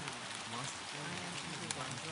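Steady rain with scattered droplet ticks, and faint overlapping speech running low beneath it: the masked affirmations of a subliminal track.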